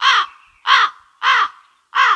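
Crow-cawing sound effect from a V8 sound card's 'Embarrass' effect button, the comic awkward-moment effect: four caws about two-thirds of a second apart, each falling in pitch.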